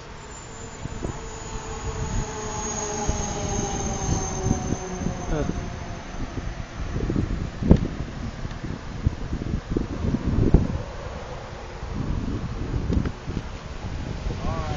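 Wooden canal lock gate swinging open as its balance beam is pushed, giving a long creak that falls slowly in pitch over the first five seconds or so. A few dull thumps follow later, over a low rumble.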